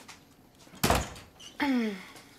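A single door-like thump about a second in, with a brief ring after it. Near the end comes a short voiced sound falling in pitch.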